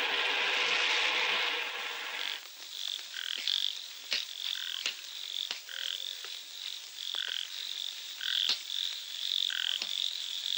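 Night ambience of frogs calling: a dense chorus that stops about two and a half seconds in, then short high croaks repeating about twice a second, with a few sharp clicks among them.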